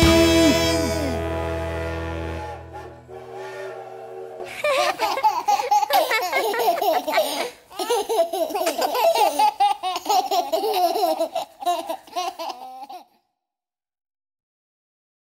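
A children's song ends on a held chord that fades out over the first few seconds. Then small children and a baby giggle and laugh for about eight seconds, and the sound cuts off suddenly.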